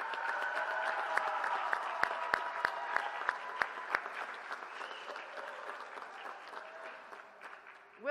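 Audience applause with cheering voices. One pair of hands close by claps sharply about three times a second in the middle. The applause fades away toward the end.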